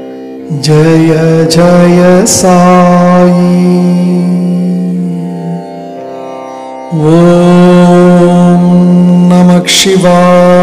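Devotional Sai Baba mantra music: long, held sung notes over a steady drone, growing briefly softer at the very start and again around six seconds in, with a few sharp bright strikes.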